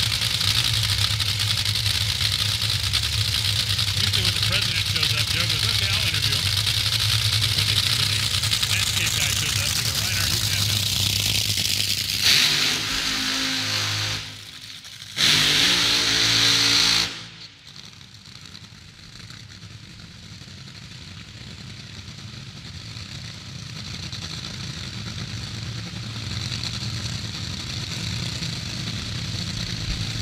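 Top Fuel dragsters' supercharged nitromethane V8 engines running loudly at the starting line. A little under halfway through come two short full-throttle bursts of a burnout; the second cuts off abruptly. After that the engines sound quieter and farther off, slowly growing louder.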